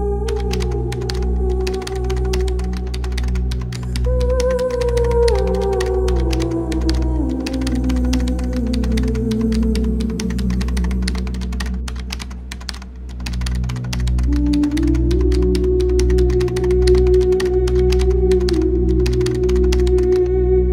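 Rapid computer-keyboard typing clicks, a typing sound effect, laid over ambient music. The music has a steady low drone and a held tone that slides down in steps, then rises again about two-thirds of the way through.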